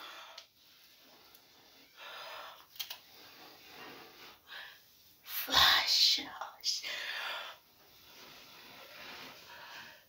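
A woman's breathy vocal sounds: soft whispering and breathing, then a louder drawn-out voiced sound with shifting pitch about five and a half seconds in, followed by a shorter one.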